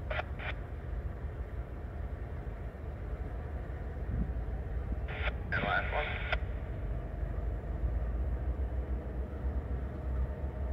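Steady low rumble of diesel locomotives in a rail yard. About five seconds in comes a burst of a voice over a radio lasting a little over a second.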